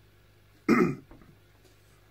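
A person clearing their throat once, a short, loud burst about two-thirds of a second in.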